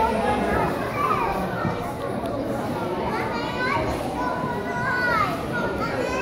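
A crowd of children chattering at once, many high voices overlapping and echoing in a large hall.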